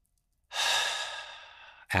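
A man's deep, audible breath out through the mouth, a long sigh-like exhale. It starts about half a second in and fades over more than a second.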